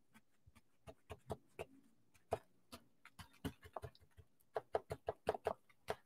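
Crumpled paper towel being pressed and dabbed onto wet watercolour paper to lift paint, giving faint, irregular crackles and ticks that come thicker near the end.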